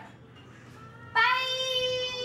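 A voice singing a long, drawn-out "bye" on one steady high note, starting about a second in.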